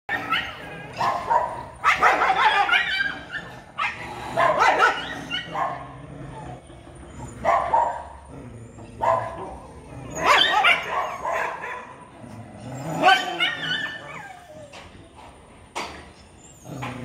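Street dogs fighting, snarling and barking in loud bursts every two to three seconds, with quieter spells between.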